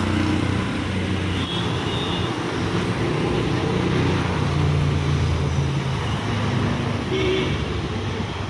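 Road traffic passing close by: the engines of vehicles, among them an auto-rickshaw and a car, running with a steady low hum, plus brief high tones about a second and a half in and again near the end.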